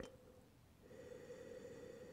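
A faint, long sniff through the nose at a glass of red wine, starting about a second in, as its aroma is taken in; a tiny click at the very start.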